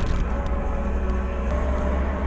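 Skid-steer loader's diesel engine running steadily, a low even drone heard from inside the operator's cab.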